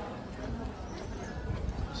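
Busy pedestrian street: background chatter of passers-by with scattered clopping knocks.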